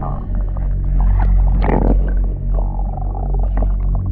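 Dark ambient soundtrack music with a steady low drone, scattered clicks and a swell a little under two seconds in.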